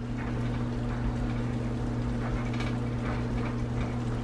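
A silicone spatula stirring linguine in a creamy sauce in a cast-iron skillet: soft, wet, irregular stirring sounds over a steady low hum.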